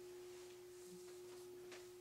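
Near silence: room tone with a faint, steady hum at a single pitch.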